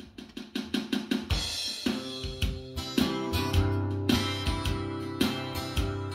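Acoustic guitar strumming a steady song intro, with drums and a bass line joining about a second in.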